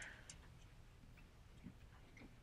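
Near silence: lecture-hall room tone with a low hum and a few faint clicks near the start.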